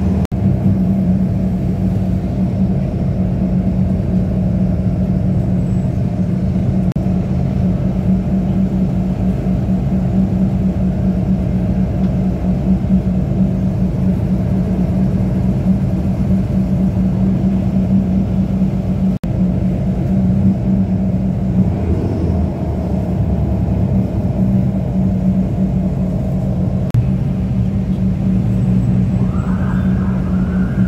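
Steady engine and road drone of a moving bus heard from inside the cabin, with a constant low hum.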